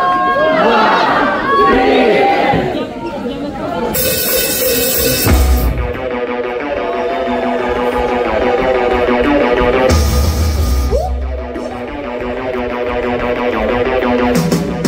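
Live rock band with electronics starting a song: voices shouting along for the first few seconds, then a burst of noise about four seconds in before the band comes in with heavy bass and sustained synth chords. A second burst of noise and bass comes about ten seconds in.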